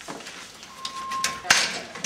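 A single steady electronic beep, a little under a second long, from the house's door entry alarm as the door is opened, followed by a sharp knock from the door.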